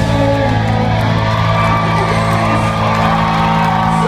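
Live pop-punk band playing through a club PA, electric guitars and bass holding one sustained, ringing chord.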